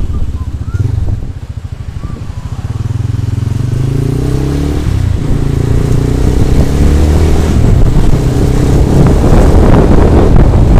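Motorcycle engine and wind buffeting a helmet-mounted microphone while riding. The sound dips for a moment near the start, then the engine picks up speed with its pitch rising about four seconds in, and it runs on louder and steady.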